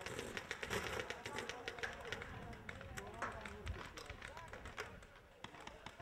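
Paintball markers firing in quick, irregular strings of sharp pops, with players' voices calling out in the background.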